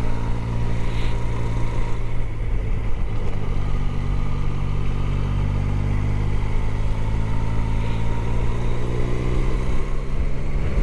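Motorcycle engine running while riding along, heard close up from an on-board camera; its note eases slightly about two seconds in, then slowly rises again.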